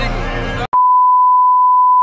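A loud, steady single-pitch test-tone beep, the reference tone that goes with TV colour bars. It cuts in abruptly a little over half a second in, replacing crowd voices, and holds unchanged.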